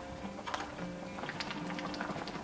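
Light clicks of a wooden ladle and wooden chopsticks against a porcelain bowl and the pot: one click about half a second in, then a quick run of small taps in the second half, over soft background music.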